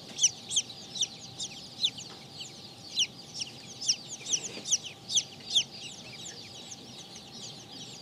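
Baby chicks peeping: short, high peeps that slide downward in pitch, several a second, thinning out over the last couple of seconds.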